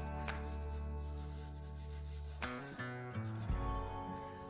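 A hand rubbing and pressing down the top edge of a sheet of velour pastel paper to stick it down, with a couple of short scrapes, over background music of sustained chords that change about halfway through.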